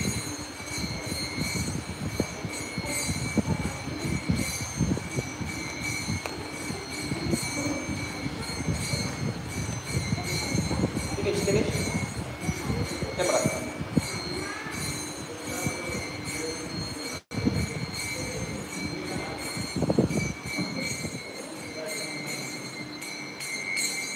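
Kirtan with small hand cymbals (kartals) ringing steadily over a murmur of voices and low thuds, the sound cutting out once, briefly, about three-quarters of the way through.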